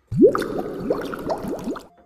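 Edited-in cartoon sound effect: a quick run of rising, bubbly water-like bloops, the first one the loudest, stopping shortly before the end.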